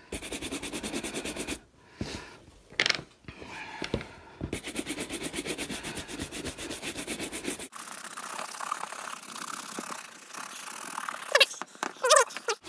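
Horsehair shoe brush buffing wax on a leather shoe: fast back-and-forth brush strokes in spells with short pauses, bringing the polish up to a shine. A brief squeak near the end.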